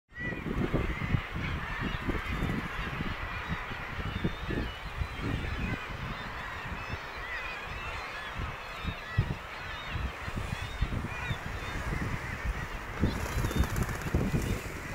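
A seabird colony: many birds calling over one another in short, overlapping calls, with wind buffeting the microphone.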